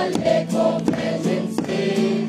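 A group of carolers singing a Christmas carol together in chorus, with a regular struck beat about every three-quarters of a second under the voices.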